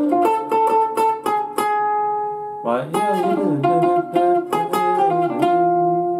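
Archtop electric guitar played clean: a quick single-note melody phrase, then from about two and a half seconds in a run of struck chords with the melody on top, ending on a held chord. It is a swing phrase with the third lowered to a flat third for a bluesy effect.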